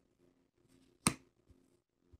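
Tarot cards being handled: one sharp snap of a card about a second in, then a soft tap. A faint steady hum underneath.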